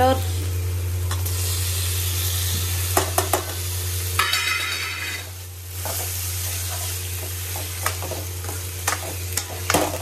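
Onion masala sizzling in an aluminium kadhai as chopped tomatoes go in and are stirred, a metal ladle scraping and knocking against the pan. A brief louder burst of sizzling about four seconds in; a steady low hum underneath.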